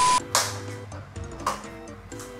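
A brief burst of TV static with a high steady beep at the very start, an editing glitch effect, then quieter background music with a short repeating melody.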